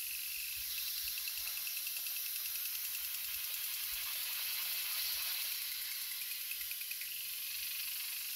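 Garden sprinkler spraying water: a steady hiss, with a fast, faint ticking that comes and goes as the sprinkler swings.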